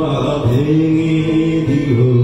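Male voice singing long, slowly bending held notes to an acoustic guitar, in the drawn-out style of a Bengali song.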